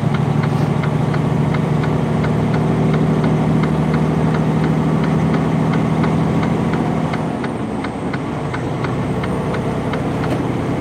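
Semi-truck's diesel engine and road noise heard inside the cab while cruising on the highway, a steady drone that softens and drops in pitch about seven seconds in. A faint even ticking, about three ticks a second, runs under it.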